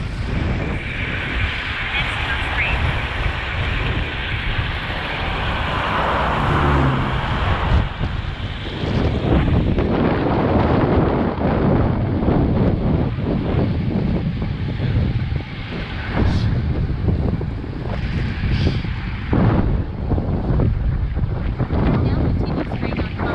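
Wind rushing over the microphone of a camera on a moving road bicycle: a loud noise that rises and falls throughout.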